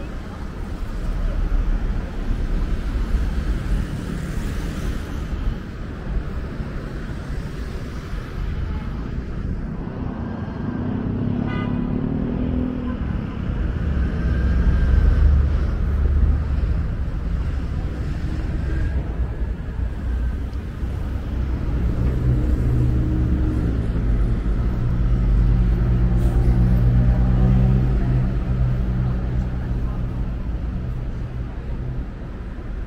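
City street traffic: motor vehicles passing with a continuous engine and tyre rumble, growing heavier and steadier in the second half as a larger engine runs close by.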